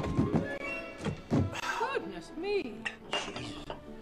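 Several thumps of someone bounding down a wooden staircase and landing, over background film music.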